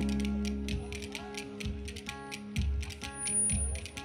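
Wooden dance spoons (kaşık) clacked together in a quick, steady clicking rhythm, over plucked-string folk music holding sustained notes.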